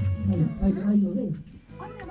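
A person's voice murmuring or chanting with a wavering pitch over background music with steady held notes. The voice stops about a second and a half in, leaving the music.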